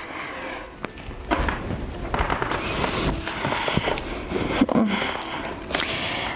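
Irregular rustling and soft knocks as a person lowers herself from sitting onto her back on a yoga mat.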